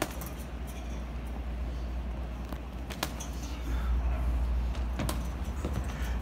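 Boxing gloves striking a hanging heavy punching bag: a few separate hits spaced apart, mostly in the second half, over a steady low hum.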